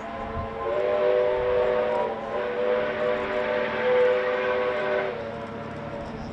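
Steam locomotive whistle sounding a long chord of several notes. The chord swells louder about a second in and stops about five seconds in.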